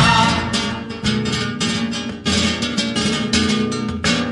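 Flamenco guitar strumming rapid rhythmic strokes in an instrumental passage between sung lines of a Spanish song, played from a cassette.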